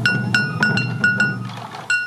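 Morioka Sansa Odori festival drumming: hip-slung taiko drums beaten with sticks in a quick run of sharp, briefly ringing strikes, about five a second, then a short break and two more strikes near the end.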